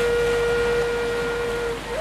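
Malay senandung music: a flute holds one long steady note, which breaks off shortly before the end as the ornamented, stepping melody resumes.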